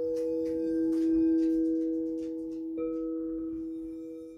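Singing bowl ringing, two steady tones sounding together that slowly fade. It is struck again about three quarters of the way through.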